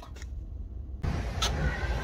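Low, steady rumble of vehicle noise. About halfway through, the background changes abruptly from a quiet car cabin to open outdoor ambience with more hiss.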